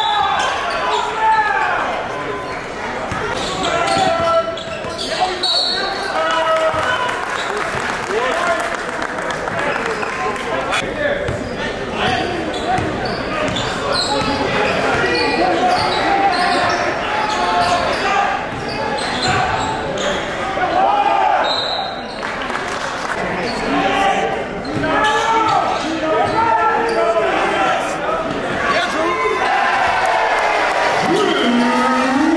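Basketball being dribbled on a hardwood gym floor during live play, with players' and spectators' voices echoing in the large hall.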